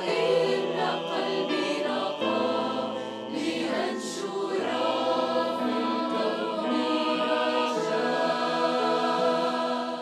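Mixed choir of women's and men's voices singing in harmony, holding sustained chords under a conductor.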